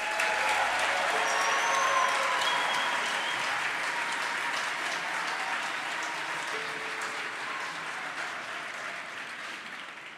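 Live concert audience applauding as a song ends, the applause gradually fading out.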